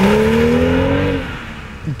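BMW M235i's 3-litre turbocharged inline-six pulling hard as the car accelerates away, its note rising steadily in pitch, then fading out after about a second and a half.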